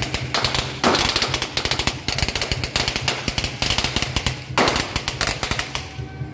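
A string of firecrackers going off in a fast, dense crackle, with heavier bursts about a second in and again near the end.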